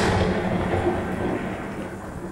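Dramatic sound-effect sting that opens a TV show segment: a sudden loud rumbling crash that fades slowly over about two seconds above a low steady drone, leading into low bowed-string music.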